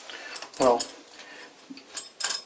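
Light metallic clinks and ticks of a steel bolt and washer being handled and fitted into a steel motor-mount bracket, with a sharper click near the end.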